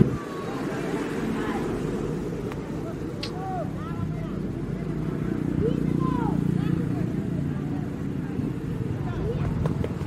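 Indistinct voices of people talking outdoors, with a few short high chirps scattered through.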